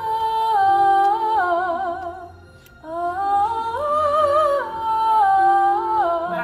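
A solo voice singing long held notes, some with vibrato, over a backing track. It sings two phrases, with a short break about two and a half seconds in.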